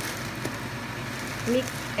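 Ground turkey and mixed vegetables frying in a skillet, a steady even sizzle.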